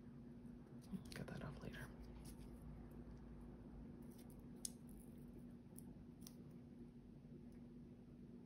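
Near silence with a faint steady hum, broken by a few soft clicks and rustles of metal tweezers and small paper letters being handled; the sharpest tick comes about halfway through.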